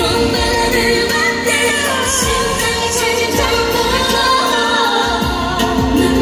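K-pop song performed on stage: female vocals over a pop backing track, played loud through an arena sound system.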